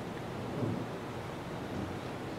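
A pause in speech: steady hiss and low rumble of room noise picked up by the lectern microphone.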